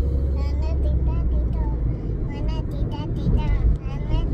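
Steady low rumble of a moving car heard from inside the cabin, with a young girl's soft voice rising and falling over it.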